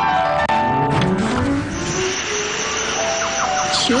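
A car engine revving, its pitch rising steadily, over background music: traffic noise in an advert for soundproof windows.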